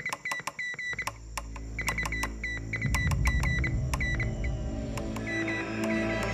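Morse code from a wireless telegraph set: a run of short and long high beeps with key clicks. Background music comes in low about a second in and grows louder underneath.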